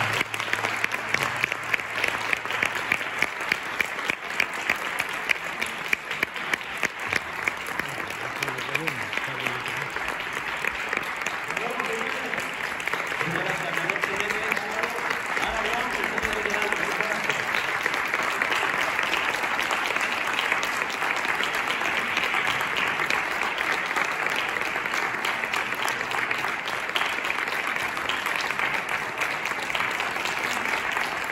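Audience applauding. Distinct loud claps stand out early on, then the clapping fills in to a steady, dense applause, with a few voices faintly audible underneath partway through.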